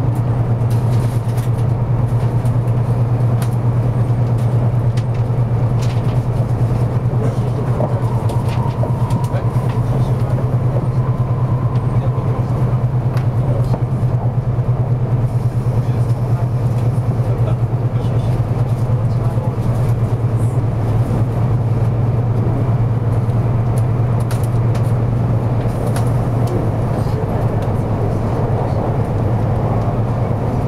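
Running noise of a 200 series Shinkansen train heard inside the passenger car: a steady low hum with the rumble of the wheels on the rails.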